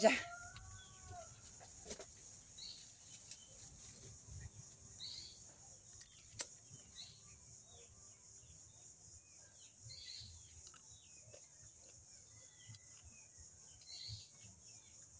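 Faint rural ambience: a steady high insect drone with scattered short bird chirps and calls, and a single sharp click about six seconds in.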